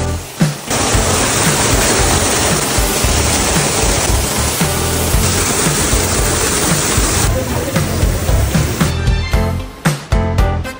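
Rushing water of an indoor waterfall and rocky stream, a steady hiss that starts about a second in and stops near the end, heard over background music with a steady beat.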